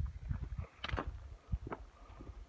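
Wind rumbling on a handheld camera's microphone on an exposed mountain trail, with a few short knocks and crunches about a second in and again near one and a half seconds.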